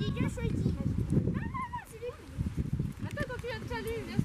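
Several children talking over one another in indistinct, overlapping chatter and exclamations.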